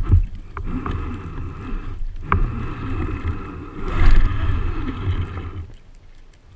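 Underwater water noise around a speargun-mounted camera as a freediver swims: a churning low rumble with a few sharp clicks and a steady high whine, all fading out just before the end.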